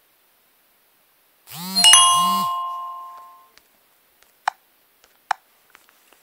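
Smartphone notification chime: a two-note electronic tone with a bell-like ding that rings and fades over about a second and a half, sounding as the VPN app connects. Two short clicks follow near the end.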